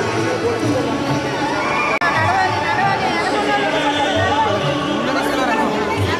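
Many voices in a large hall: crowd chatter overlapping with chanting of Sanskrit verses, with a momentary dropout about two seconds in.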